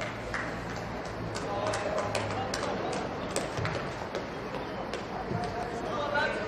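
Players' voices shouting in a goal celebration on a football pitch, with scattered sharp taps.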